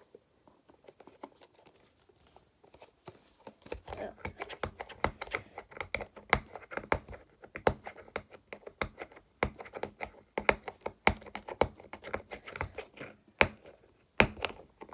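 Fingernails picking and scratching at the sealed end flap of a small cardboard Hot Wheels ID box, trying to pry it open. After a few quiet seconds it becomes a quick, irregular run of small clicks and scrapes.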